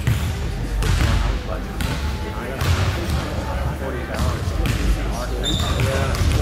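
Basketball bouncing on a hardwood court, a thud about once a second, with voices in the background.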